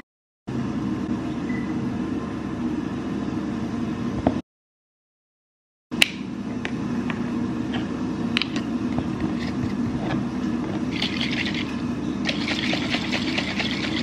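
A spatula scraping guacamole into a glass jar, with a few sharp taps, then the jar of vinegar dressing being shaken hard near the end. A steady low hum runs underneath, and the sound drops out briefly twice in the first half.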